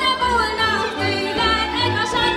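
Hungarian folk dance music from a táncház string band: a fiddle carries the melody with sliding notes over chordal accompaniment, with the double bass pulsing on a steady beat.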